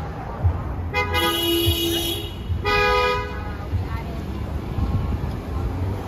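A car horn honking twice, a longer honk of a little over a second and then a short one, over steady street traffic.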